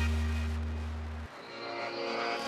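Background music ending: a held chord with a deep bass note fades out and cuts off a little over a second in, leaving only faint noise.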